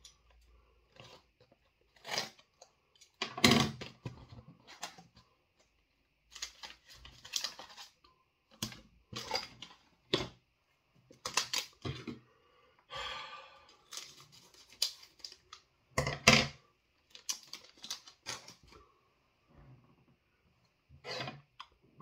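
Crunching of a crisp chip being bitten and chewed, in about a dozen short, irregular bursts.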